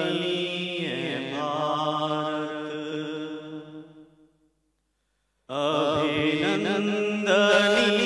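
A man chanting into a microphone in long, drawn-out notes. The chant fades away near the middle, a second of silence follows, then it starts again abruptly.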